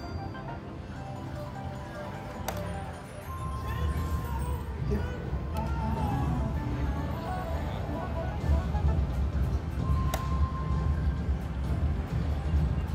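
Explorer Magic video slot machine playing its electronic spin music and chimes as the reels spin and stop, with a few sharp clicks. A steady low pulsing beat comes in about three seconds in.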